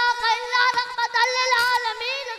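A boy's voice chanting in a long, drawn-out held note, wavering slightly around one pitch, in the sing-song style of a devotional Urdu speech.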